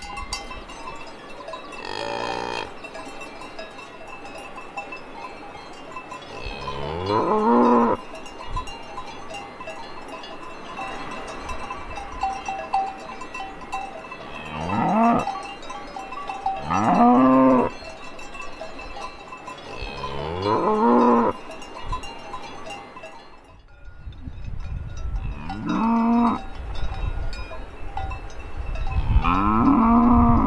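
Braunvieh (Brown Swiss) cattle mooing about seven times, each moo rising in pitch, with cowbells ringing steadily behind. A low rumble comes in near the end.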